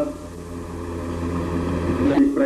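A steady low hum with fainter steady tones above it, cutting off abruptly at the end.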